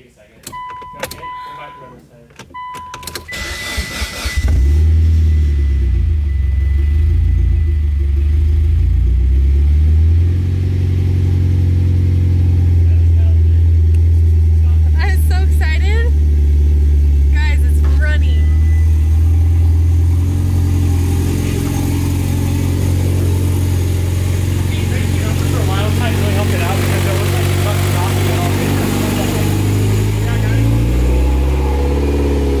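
Mitsubishi Lancer Evo X's turbocharged 2.0-litre four-cylinder (4B11T) cranking on the starter, catching about four seconds in and then idling steadily. This is the first start of a freshly rebuilt engine.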